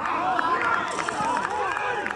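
Several men shouting at once on an outdoor football pitch, a loud burst of voices that starts suddenly, in reaction to a free-kick shot on goal.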